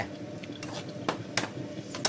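Metal slotted spoon clicking and scraping against a frying pan as chopped garlic in olive oil is stirred: a few sharp, irregular clicks.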